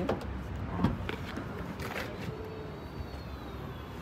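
Tesla Model Y power liftgate opening: a click about a second in, then the liftgate motor running with a faint high whine as the tailgate rises.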